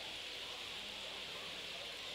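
Faint, steady hiss of city street background noise, with nothing standing out.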